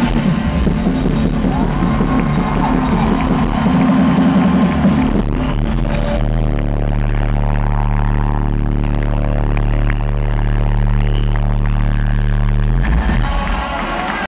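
Live rock band playing at full volume. About six seconds in it settles into one held, ringing chord that sustains until near the end.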